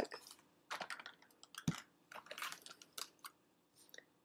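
Plastic-packaged Scentsy wax bars being handled and sorted by hand: faint, scattered light clicks and rustles of the plastic packs, with a soft thump a little under two seconds in.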